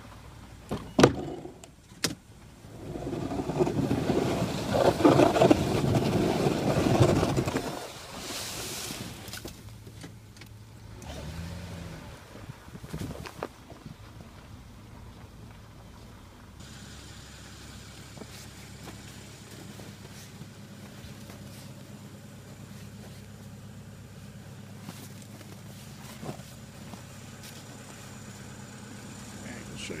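Jeep Wrangler Unlimited plowing snow with a front-mounted Fisher plow, heard from inside the cab. Two sharp clicks come first, then a loud rush of noise for about five seconds, then a steady, quiet engine hum.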